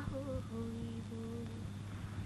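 A voice humming a slow tune in long held notes, with a short break about halfway through, over a steady low hum.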